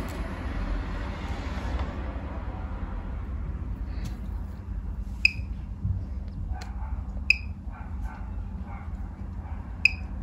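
Geiger counter ticking as it detects counts: a few short, sharp beep-ticks at irregular intervals, seconds apart, a low count rate while it measures an amethyst.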